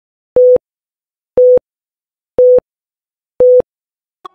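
A loud electronic beep tone, like a telephone busy signal, sounding four times about once a second. Each beep is a short, steady single pitch with silence between.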